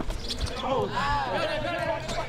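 A basketball bouncing on an outdoor asphalt court, a couple of sharp thumps in the first half second, under men's shouting.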